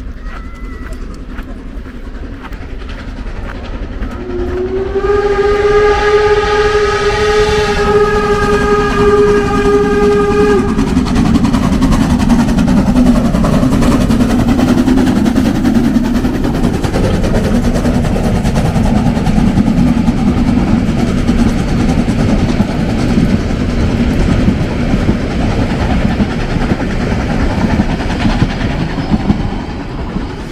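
Narrow-gauge steam tank locomotive 99 7240-7 (a 2-10-2T) blowing one long, steady steam-whistle blast about four seconds in, a warning as it nears the level crossing. It then runs close past, pulling its coaches, with a loud rumbling and clatter that carries on to the end.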